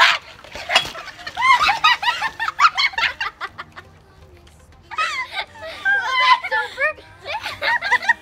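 Girls laughing hard, high-pitched cackling laughter in two long fits with a short lull between them. A sudden loud noise right at the start.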